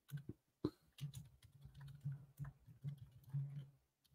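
Typing on a computer keyboard: a faint run of irregular key clicks.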